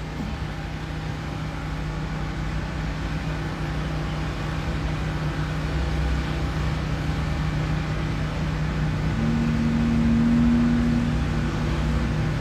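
Steady low mechanical hum and rumble. A second, slightly higher hum joins for about two seconds near the end.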